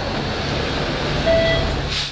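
Octopus card fare reader giving one short electronic beep about a second and a half in, over the steady low rumble of the double-decker bus's running engine.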